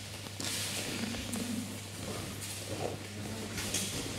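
Quiet hall ambience of people moving about on judo mats: rustling and soft movement, with faint murmured voices, over a steady low hum.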